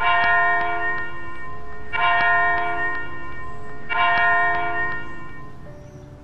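A bell struck three times, about two seconds apart, each stroke ringing out and slowly fading.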